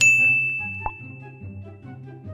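A single bright ding: a high bell-like tone struck once that rings on and slowly fades over about two seconds, with a short click a little under a second in. Soft background music runs underneath.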